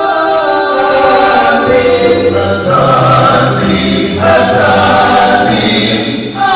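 Male vocal quartet singing a cappella in close harmony through microphones, holding long chords, with a short break about four seconds in.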